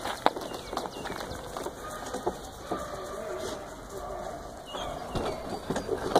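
Outdoor birdsong with low wavering calls, punctuated by a few sharp clicks, the loudest about a quarter of a second in.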